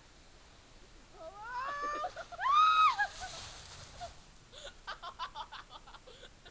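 A person's loud, high-pitched squeal that rises, holds and falls, a little over two seconds in, after a couple of shorter rising calls, followed near the end by a run of short laughs.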